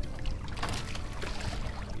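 Lake water slapping against the hull of a small fishing boat, under a steady low rumble of wind on the microphone, with a brief louder splash about half a second in.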